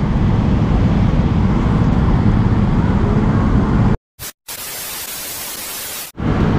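Steady low street-traffic and road noise, which cuts off abruptly about four seconds in. After a brief gap comes an even hiss of TV static from a glitch-style video transition effect, lasting about a second and a half.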